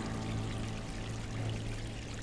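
Aquarium air bubbles and water trickling, over a low, steady held note of soft background music.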